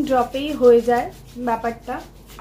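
A woman speaking, with her palms rubbing together.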